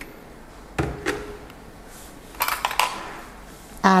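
Kitchen containers and a spoon handled on a countertop: a light knock about a second in, then a brief cluster of sharp clinks.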